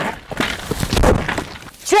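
Office chair and its rider crashing onto the rocky roadside edge: a quick run of knocks and scrapes that dies down within about a second.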